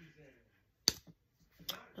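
Two short, sharp clicks: a loud one about a second in and a weaker one near the end.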